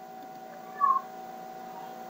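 A single short, faint call about a second in, a brief tone that rises and falls slightly in pitch, over a steady low background hum. It has the character of a cat's meow heard off to the side.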